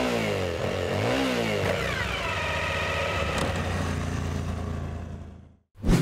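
A motorcycle engine revving, its pitch swinging up and down, then holding steadier before fading out about a second before the end.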